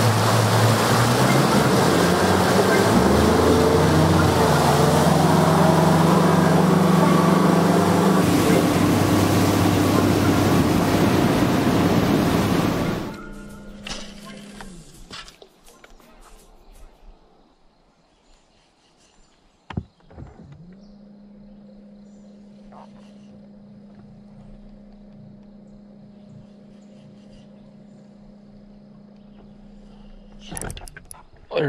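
Bass boat outboard motor running at speed under the heavy rush of wind and wake, its pitch stepping up about three seconds in. About thirteen seconds in it gives way to a much quieter stretch, where a bow-mounted electric trolling motor hums steadily, with one sharp knock shortly before the hum settles.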